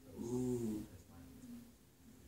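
A single short, low vocal sound, under a second long, that rises a little in pitch and falls again, followed by quiet room noise.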